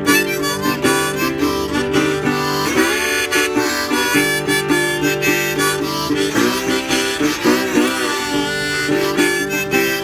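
Harmonica in a neck rack playing a bending blues solo over a metal-bodied resonator guitar picked in a steady rhythm with a slide.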